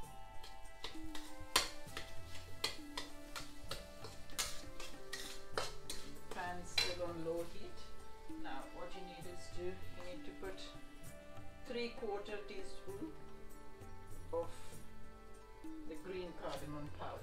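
A metal spatula clinks and scrapes against a metal kadai, with other dish and utensil clatter, in a run of irregular sharp clicks and knocks over steady background music.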